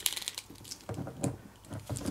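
Scattered light clicks and rubbing of hands handling a plastic action figure.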